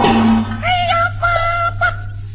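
Cantonese opera music: a high melody line of short, sliding, wavering notes, over the steady low hum of an old recording.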